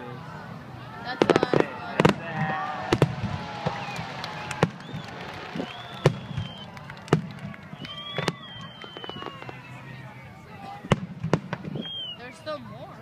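Aerial fireworks bursting overhead: a string of sharp bangs at uneven intervals, several in quick succession about a second in, then single reports every second or so.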